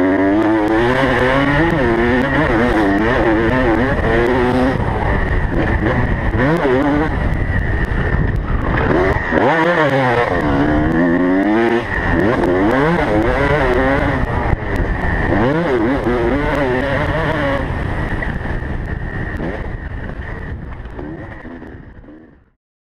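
Motocross bike engine heard on board, revving up and down over and over as the throttle opens and closes, its pitch rising and falling. The sound fades out over the last few seconds.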